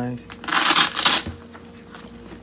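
Nylon tool bag being handled and flipped open, its fabric and pocket panels rubbing in two brief rasping bursts about half a second and a second in.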